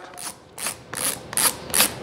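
BOA dial on a snowboard boot being turned to wind its steel cable lace in, the ratchet clicking about four or five times a second as the slack is taken up.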